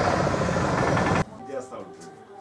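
Loud rushing noise with a rapid flutter that cuts off abruptly about a second in, followed by faint voices.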